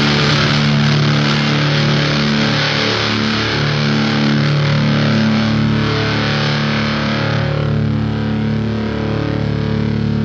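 Heavy metal music: distorted electric guitar holding sustained, heavy chords that change every second or two. The bright top end thins out about three-quarters of the way through.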